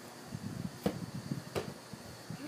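A soccer ball kicked twice on grass, two sharp knocks about three-quarters of a second apart.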